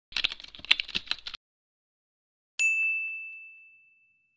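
Typewriter sound effect for a title card: a quick run of key clicks for just over a second, then after a pause a single bell ding that rings on and slowly fades.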